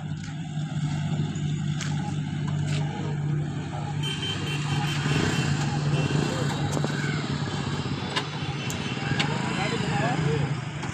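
Motorcycle engines running steadily at low revs, with people's voices around them.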